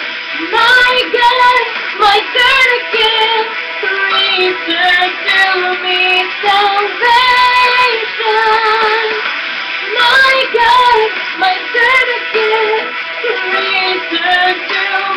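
A woman singing a slow melody, holding notes with a wavering vibrato.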